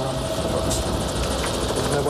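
Steady helicopter engine and rotor noise, heard over the radio link from the aircraft's cabin.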